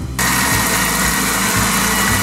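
Electric food processor switched on just after the start and running at speed, a steady whirr with a high tone in it, as it blends crème fraîche and roquefort into a smooth sauce.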